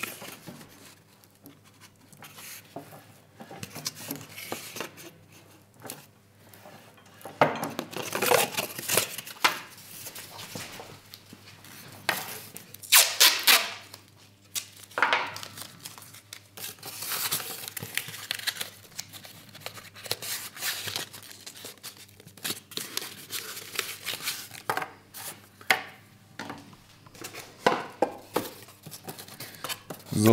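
Cardboard being folded, taped and handled on a metal workbench: irregular tearing and crinkling bursts, loudest several times partway through, between small clicks and knocks.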